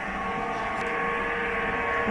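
A steady droning hum with several held tones, growing slightly louder.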